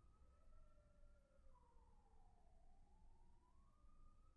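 Faint wailing siren, far off, its pitch sliding slowly down and back up once.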